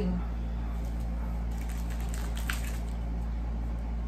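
Steady low hum of room tone with a few faint, short clicks and rustles of small objects being handled on a table.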